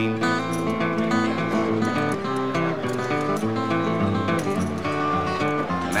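Strummed acoustic guitar playing an instrumental break of a country-folk song, with no singing.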